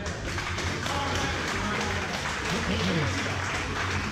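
Crowd applause, a dense patter of many hands clapping that starts at once as the winner's hand is raised, with music playing alongside and a few voices.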